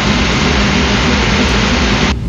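Honda CBR1000RR-R Fireblade superbike's inline-four engine running steadily and loudly in the pit garage, being warmed up by a mechanic.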